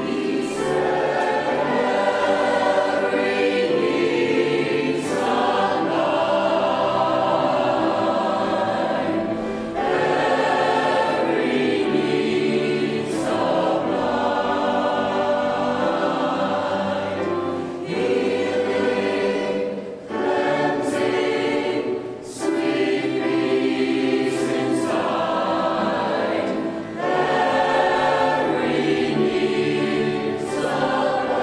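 Mixed choir of men and women singing a worship song, sustained sung phrases with short breaks for breath between them.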